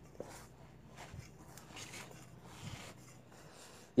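Faint rubbing and squishing of a hand kneading chicken meatball dough mixed with rice flour and wheat flour in a stainless steel bowl, in soft irregular strokes, with a small click near the start.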